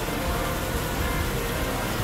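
Steady rushing hiss of running water and aquarium pumps and filters in a fish store, with music playing faintly.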